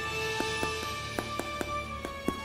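Background music, with a run of small sharp crackles in the second half as fingers squeeze the crisp crust of a freshly baked sourdough roll.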